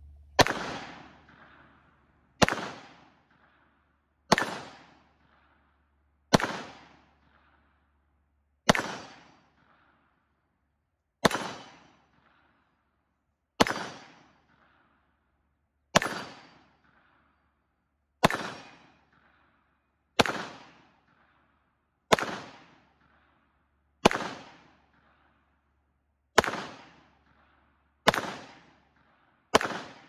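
Masterpiece Arms MPA 30T 9mm pistol being fired: about fifteen single shots, spaced roughly two seconds apart, each sharp report trailing off over about a second.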